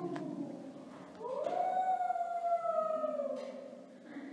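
A single long howling call begins about a second in. It rises in pitch, holds, then slides slowly down over about two seconds before fading.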